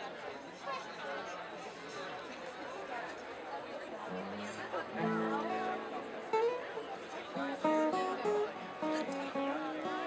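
Crowd chatter, and from about four seconds in, acoustic string instruments on stage play scattered single held notes and short phrases over it, as if tuning or warming up rather than playing a song.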